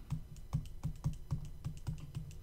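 A stylus tapping and clicking on a tablet screen while handwriting, a quick irregular run of light ticks, about five or six a second.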